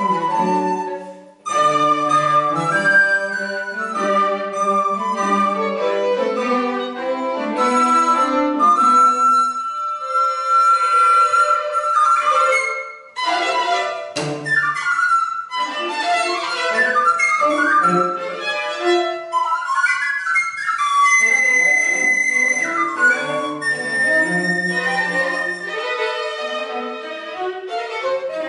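Recorder and string quartet (two violins, viola, cello) playing live chamber music, with long held high recorder notes over bowed string lines. The music breaks off briefly about a second in and again near the halfway point.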